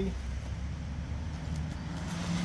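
Steady low outdoor rumble.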